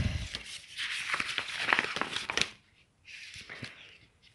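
Paper rustling and crinkling with small clicks as the pages of a booklet are turned and handled by hand. There is a short pause past the middle, then fainter rustling.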